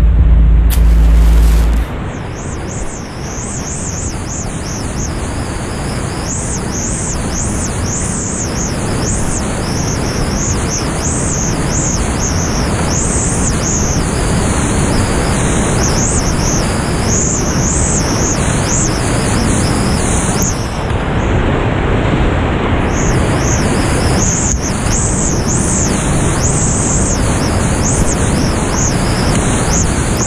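Steady, loud rush of whitewater rapids heard from inside the rapid as a kayak runs through it, growing slightly louder over the run. A low note of background music cuts off about two seconds in.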